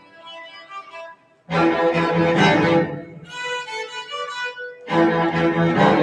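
A string orchestra of violins and cellos playing sustained bowed chords. The music pauses briefly a little over a second in, and new phrases come in at about a second and a half and again near five seconds, with a higher, lighter passage between them.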